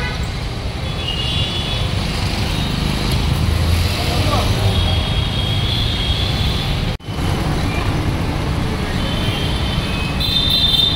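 Busy city street traffic: a steady rumble of engines with a few short, high horn toots.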